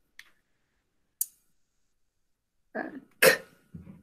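A woman's voice making a few short, clipped sounds, beginning about three seconds in: a teacher sounding out a single phonogram for dictation.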